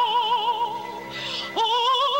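Operatic soprano singing with wide vibrato: a held note fades out well under a second in, a short hiss follows, and a new note swoops up into place and is held near the end.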